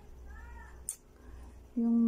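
A cat meowing faintly once: a short call that rises and falls in pitch, followed by a sharp click.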